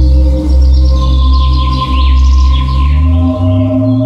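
Ambient background music of low, sustained drone tones like a gong or singing bowl, with bird chirps over it from about one to three seconds in.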